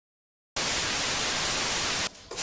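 Static-noise sound effect: silence, then about half a second in a steady, even hiss switches on abruptly and holds at one level.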